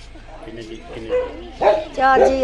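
A dog barking: two short barks in the second half.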